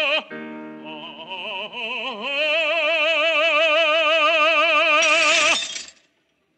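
A man sings loud up the scale, climbing in steps to a long held high note with vibrato. Near the end a glass shatters and the note breaks off: the sound effect of his voice breaking the glass.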